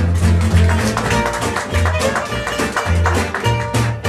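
Gypsy jazz string band playing live: acoustic guitars strumming a steady swing rhythm over plucked double bass, with the violin bowing.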